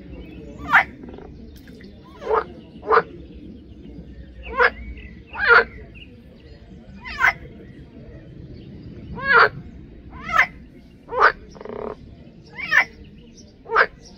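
Water frogs (Pelophylax, green frogs) calling: about eleven short, loud croaks, irregularly spaced roughly a second apart.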